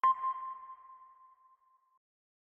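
A single sonar-style ping sound effect for an animated logo: one sudden high, clear tone that rings and fades away over about two seconds.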